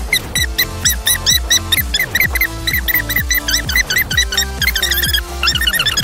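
A boy's voice counting aloud, sped up in fast forward into rapid squeaky chirps about five or six a second, over background music with a steady bass beat.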